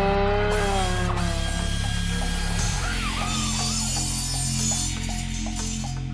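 Channel intro jingle: a motor-revving sound effect holds its pitch and falls away in the first two seconds. Steady music with a regular clicking beat, about two clicks a second, follows.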